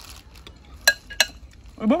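Metal spoons clinking against a shared serving bowl while food is scooped out: two sharp clinks about a third of a second apart, about a second in, with a few fainter taps after.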